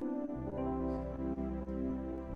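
Electronic keyboard playing slow, sustained chords in a soft ambient style, with a low bass note coming in just after the start.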